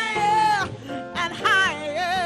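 Live soul band playing: a woman's wordless vocal runs, held notes that swoop up and down, over electric guitar, drums and keyboard.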